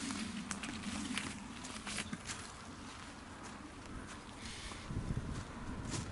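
Footsteps walking uphill over dry leaf litter and twigs, with a few sharp cracks in the first couple of seconds, then quieter rustling and a few dull steps near the end.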